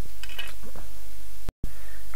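Steady low hum with a few faint clicks of plastic model-kit parts being handled on a cutting mat. The sound cuts out completely for a split second about one and a half seconds in.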